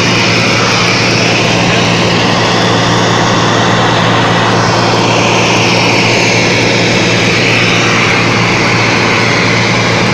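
Single-engine propeller plane in cruise, its engine and propeller running steadily with a low hum under loud, even noise, heard from inside the small cabin.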